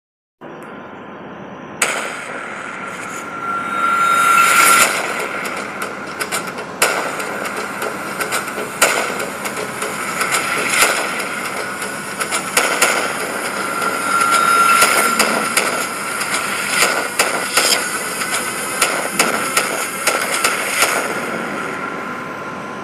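A steady hiss with many sharp cracks and pops scattered through it, and a whistling tone that swells and fades twice.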